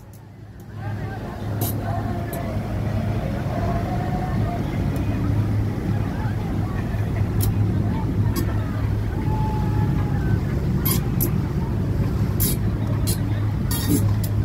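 Motor yacht under way, its engines giving a steady low hum, with indistinct voices in the background and a few sharp clicks. The sound comes up about a second in.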